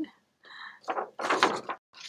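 Sheets of printer paper being handled and slid across a paper stack: a short slide followed by two bursts of rustling.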